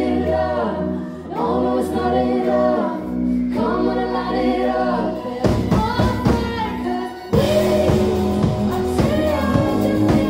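Live pop band with a female lead singer singing into a microphone over a sustained low synth and bass. Sharp percussion hits start about five and a half seconds in, and the full band comes in louder a little after seven seconds.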